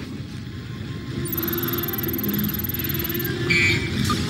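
Film score music over a steady low sci-fi machine rumble, with a thin high electronic whine through the middle. Near the end come short electronic beeps from the control console's keys being pressed.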